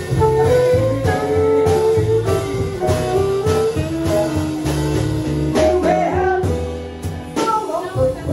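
Small jazz band playing live: a saxophone carrying the melody in long held notes over a plucked upright bass and drums, with a woman singing into a microphone.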